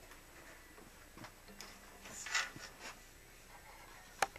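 Faint handling noise of someone getting up with an acoustic guitar: a few light knocks and a brief rustle about two and a half seconds in.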